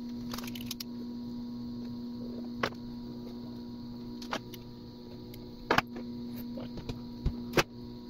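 Steady electrical mains hum, with a handful of sharp, small clicks and taps from plastic servo arms and 3D-printed robot parts being handled and pressed together.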